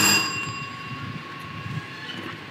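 A bell-like chime that was struck just before, ringing on with several high tones and fading slowly, over low background noise.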